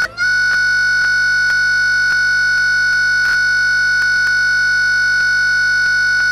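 Crashed Windows 7 virtual machine's sound frozen in a loop: one loud, high-pitched steady tone, held without change, starting about a quarter second in. It is the audio buffer repeating after the system has stopped on a blue screen.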